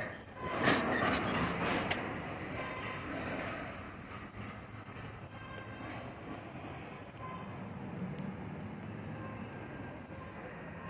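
Freight cars rolling past slowly during switching. About half a second in comes a loud burst of clanking that lasts a second or so, and then the cars settle into a steady rumble and clatter of wheels on rail.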